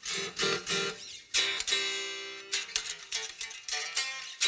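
Single-cut kit electric guitar with Mojotone '59 humbuckers, heavy 16–68 strings tuned to C standard, played clean: a few picked single notes, then a chord about a second and a half in that rings for about a second, then more picked notes.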